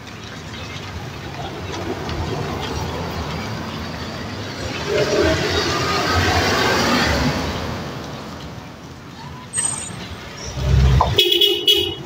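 A car passes close by on the road, its engine and tyre noise swelling over a few seconds and then fading away. Near the end comes a short car-horn toot.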